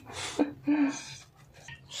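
A dog's breathing and sniffing close to the microphone, with a brief low voiced sound just under a second in.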